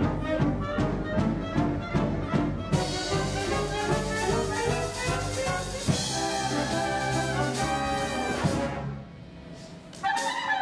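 A live big band with brass plays an upbeat jazzy dance number over a driving beat, then swells into held notes that stop about nine seconds in at the end of the number.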